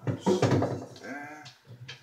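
A man's loud wordless vocal sound with a wavering pitch, followed by a few shorter vocal noises near the end.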